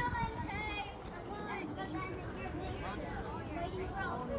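Children's voices and chatter in the background, with no clear words.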